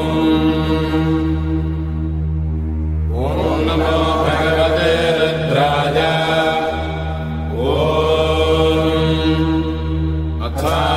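Vedic Sanskrit mantra chanting in long, sung phrases over a steady low drone. New phrases begin about three seconds in and again near eight seconds.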